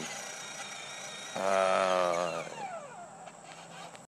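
Electric motor whine of a child's battery-powered ride-on toy ATV as it turns off the driveway onto grass. A louder steady-pitched tone swells for about a second in the middle, and the whine falls in pitch near the end.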